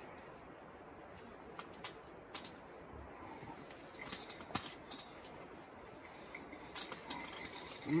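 Faint sounds of people eating sandwiches: chewing, with scattered small clicks and rustles.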